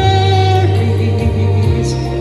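A woman singing solo into a handheld microphone over instrumental accompaniment with a strong, sustained bass, holding her notes and stepping between them.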